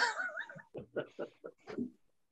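A man laughing after his own joke, heard over a video call: a first burst of voice, then a run of short, quickening laugh pulses that die away.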